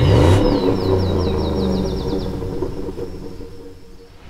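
Logo-sting sound effect: a deep engine-like rev and rumble that hits at once and slowly fades away, with a quick run of high chirps over the first two seconds.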